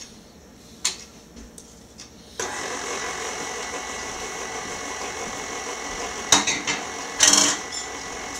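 KitchenAid stand mixer switched on a little over two seconds in, its motor then running steadily. A few light clicks come before it starts, and two brief louder clatters sound over it near the end.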